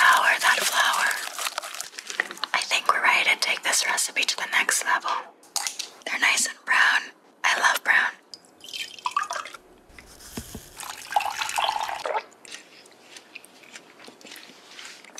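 A woman talking, with short clicks and scrapes from a spatula stirring flour and liquid into a batter in a glass bowl early on.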